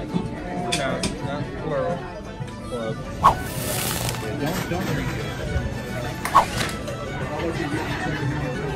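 Cocktail bar room sound: voices talking over music, with two sharp clinks about three and six seconds in.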